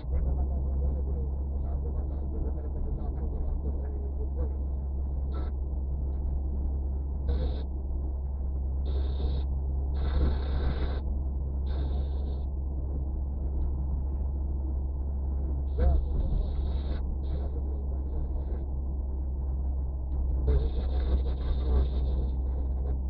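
Steady low rumble of a car driving along a road, heard from inside the cabin, with several brief higher hissing bursts.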